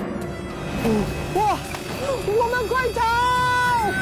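Background game music with excited wordless vocal cries over it, ending in one long held cry in the last second.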